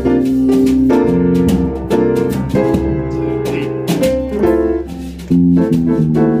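Jazz played by a small band: an upright piano plays chords and lines, with drums keeping time underneath.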